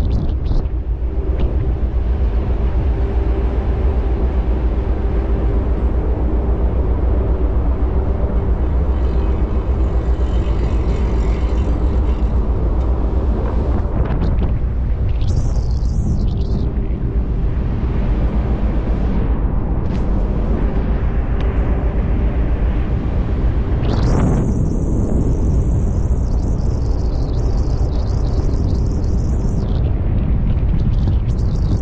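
Loud, steady low rumble at the top of a ship's funnel while the ship is underway, the engine exhaust running with wind buffeting the action camera, and a faint steady hum within it. A higher hiss joins in about two-thirds of the way through.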